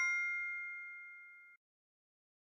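The fading ring of a two-note chime sound effect marking the correct answer. It dies away steadily and stops about one and a half seconds in.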